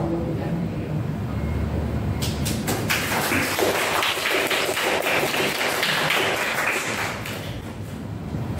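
A small group of people applauding by hand. A few separate claps come about two seconds in, then it builds into steady applause that tails off near the end.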